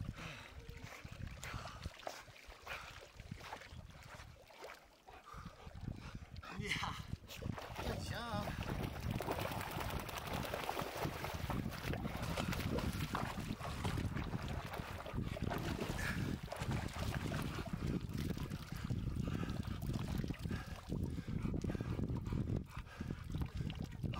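Water splashing and sloshing as a person wades through knee- to shin-deep lake water with a dog moving alongside; the splashing becomes steady and continuous from about eight seconds in.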